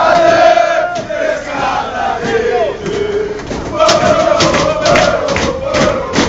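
A group of football ultras chanting together in unison at full voice. From about four seconds in, rhythmic hand claps join the chant at about three a second.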